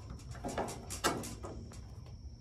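Pop rivet gun setting a rivet through a gutter end cap: a few sharp clicks, the loudest about a second in.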